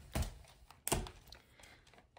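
Two soft thumps, about a quarter second and about a second in, with faint rustling, as plush toys are handled and set down on a rug.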